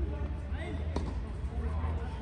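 A tennis ball bouncing on a hard court: one sharp bounce about a second in and a fainter one near the end, typical of the server bouncing the ball before serving, under faint voices and a low steady hum.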